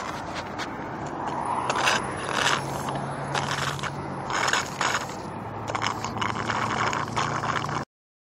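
Bicycle rolling along a concrete sidewalk: steady tyre and wind noise with repeated short scraping and rattling bursts. The sound cuts off suddenly near the end.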